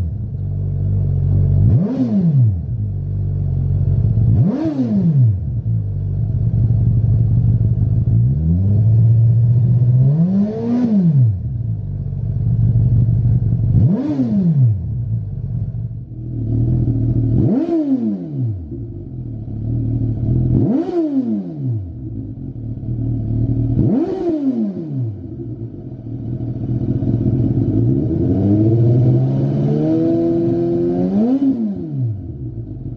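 Suzuki GSX-S1000 inline-four running through a Lextek CP1 aftermarket silencer, idling between about eight quick throttle blips, each rev rising sharply in pitch and dropping straight back to idle.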